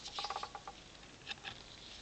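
Faint handling noise: a brief patch of light rustling and small ticks in the first half second, then low background hiss.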